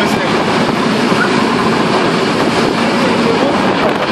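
A moving passenger train with its door left open: a loud, steady rush of wind and running noise through the open doorway.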